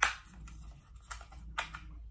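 A camera battery slid into a small plastic Canon battery charger, seating with one sharp click, followed by two fainter plastic clicks about a second and a second and a half in as the charger is handled.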